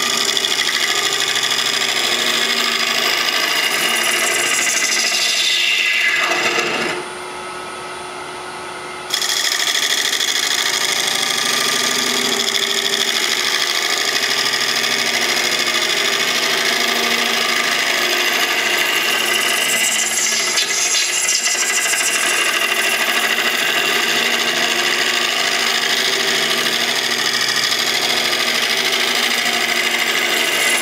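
A negative-rake carbide scraper cutting the inside of a spinning epoxy resin and hardwood bowl blank on a lathe: a loud, steady scraping rasp as the bowl is hollowed out. About seven seconds in, the cut stops for roughly two seconds, leaving a quieter running sound, and then resumes abruptly.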